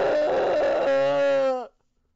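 A man's long, strained wail, held on one high pitch, rough and raspy at first and then clearer, dropping slightly before it cuts off about a second and a half in: a comic dying cry.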